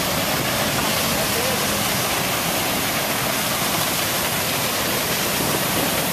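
A waterfall heard up close: a steady, even rush of falling water that fills the whole sound.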